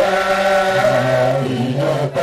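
A crowd singing a chant together, many voices holding long notes that step up and down in pitch.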